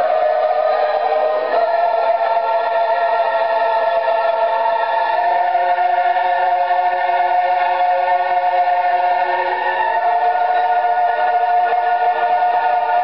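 Music with a choir of voices singing long, held notes at a steady level.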